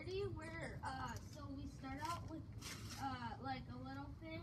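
Only speech: people talking in conversation.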